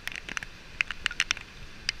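Raindrops tapping irregularly on the camera close to the microphone, many sharp ticks a second, over a faint wash of surf.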